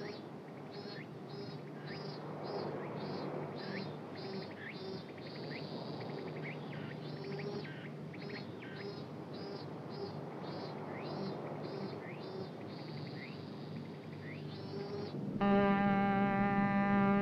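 Quiet, rhythmic high chirping, short calls about two a second with a couple of longer held stretches, over a faint low steady hum. About a second before the end, a sustained music chord comes in and the sound gets louder.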